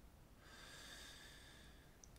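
Near silence with a faint breath drawn in through the nose, from about half a second in until shortly before the end.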